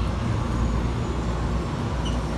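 Steady low rumble and hum inside a PHX Sky Train people-mover car.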